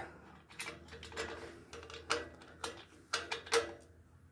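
Light, irregular clicks and taps of a plastic reflector being handled against a steel trailer frame, about seven in all, the two loudest near the end.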